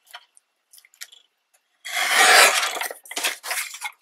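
Birabira lever-arm paper trimmer's blade brought down through a strip of scrapbook paper: a crisp slicing rasp lasting about a second, near the middle, with light paper-handling ticks before and after.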